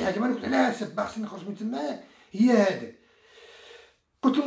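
A man talking in Moroccan Arabic in short phrases, pausing briefly near the end.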